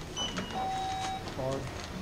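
Convenience-store checkout beeping as items are scanned: a short high beep, then a longer, lower beep.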